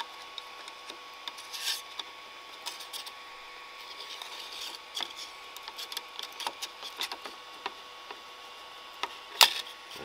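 Steel putty knife scraping and prying under the edge of a PLA print on a 3D printer's glass bed, in short scrapes and small clicks, with one sharp snap about nine seconds in as the print comes loose from the bed.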